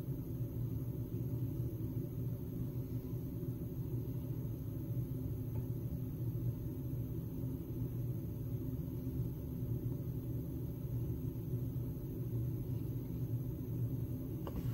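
A steady low background hum, even throughout, with no other sound over it.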